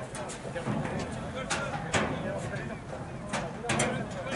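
Indistinct voices of people talking in the background, broken by several sharp knocks, the loudest about two seconds in and a quick cluster near the end.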